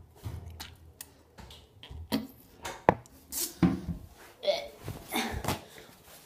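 A person chewing a jelly bean close to the microphone: irregular wet mouth clicks and smacks, with a few short wordless vocal sounds in between.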